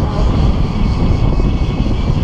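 Car driving along a road, with wind buffeting the car-mounted action camera's microphone: a loud, steady, low rumble.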